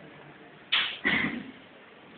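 Two quick scratching strokes of writing on a board, the second a little longer.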